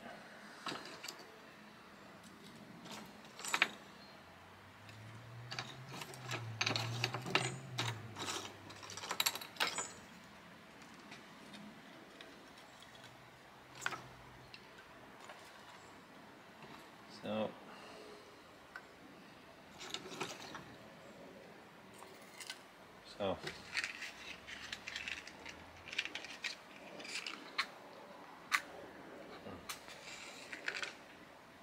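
Dry wooden kindling sticks clicking and knocking against each other and against a small stone rocket stove as they are laid into its fire opening, with light metal clinks from the stove's top grate. The knocks come irregularly, in a busy run in the first ten seconds and again near the end.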